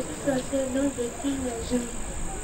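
A young woman speaking softly in short broken phrases, with a steady high-pitched hiss underneath.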